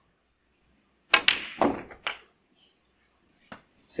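Snooker balls clicking: two sharp clicks about half a second apart a little over a second in, each ringing off briefly, then a fainter click near the end.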